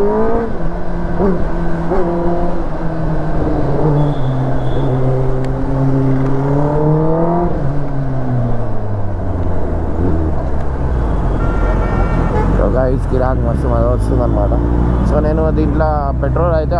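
Kawasaki Ninja ZX-10R inline-four engine pulling in second gear, its pitch climbing slowly, then falling away over a couple of seconds as the throttle is closed, settling lower. Near the end the pitch rises and falls in quick short blips.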